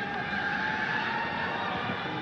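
Steady stadium background noise from a football match broadcast, an even hum of ambience with no distinct events.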